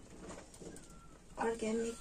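A dove cooing: one short two-part coo on a steady pitch, about a second and a half in.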